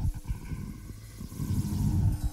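Low rumbling swell with a steady hum under it, starting suddenly and building up: the opening of a video's outro music sting.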